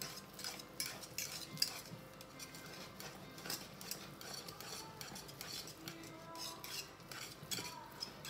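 A metal whisk stirring thick instant mashed potatoes in a saucepan, its wires clicking and scraping irregularly against the pan.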